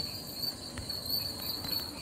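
Crickets chirping in a steady high trill.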